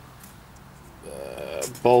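A man's voice: a short quiet pause, a brief hesitant hum about a second in, then the spoken word "bulbs" near the end.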